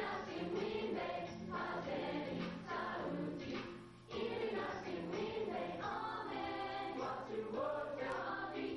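Youth choir singing in phrases, with a short break about four seconds in before the next phrase.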